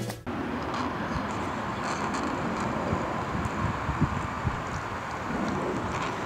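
Steady outdoor background noise, an even hiss with wind on the microphone. Background music cuts off a moment after the start.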